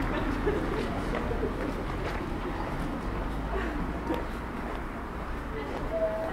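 Town-street ambience: passers-by talking and a bird calling over a steady background noise.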